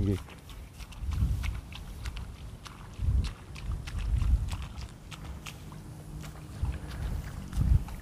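Faint light ticks and splashes of rice seedlings being pulled by hand out of a flooded, muddy nursery bed, under uneven low gusts of wind rumbling on the microphone.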